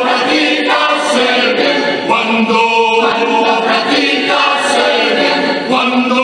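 Mixed choir of men's and women's voices singing in harmony, holding long chords that change every second or two.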